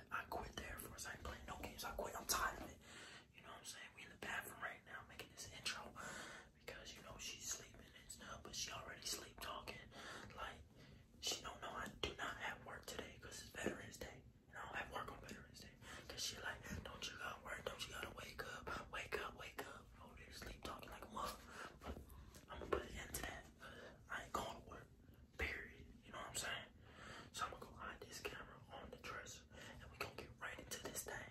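A man whispering continuously, low and breathy.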